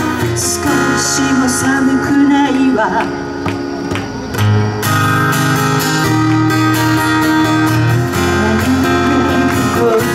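Live acoustic guitar strummed along with a woman singing into a microphone, amplified through a PA.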